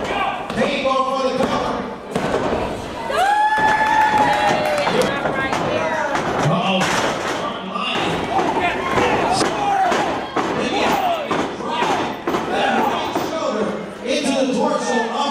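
Wrestlers' bodies thudding and slamming on the ring canvas, mixed with spectators shouting, including one long held yell a few seconds in.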